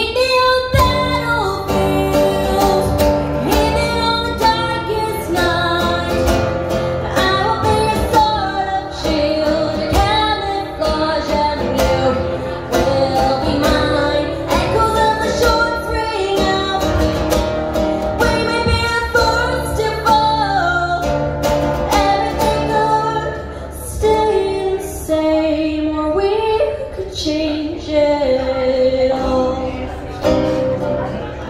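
A girl singing a song live to her own strummed nylon-string classical guitar, amplified through a PA, with a steady strumming rhythm under the voice throughout.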